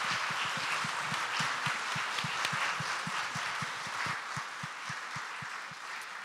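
Audience applauding, a dense steady clapping that eases off toward the end.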